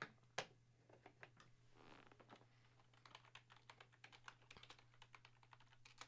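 Faint typing on a computer keyboard: quick, irregular key clicks, sparse at first and densest in the second half, over a low steady mains hum.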